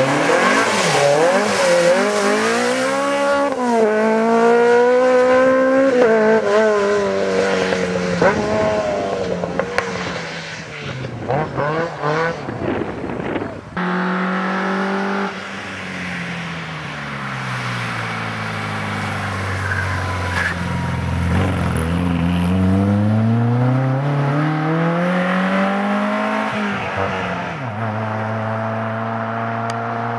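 Volkswagen Golf rally cars driven hard, one after the other: engines revving up and down through the gears, the pitch repeatedly climbing and then dropping. About halfway the sound cuts from the first car, a Golf Mk3, to a Golf Mk1, whose engine pitch falls, climbs again and settles.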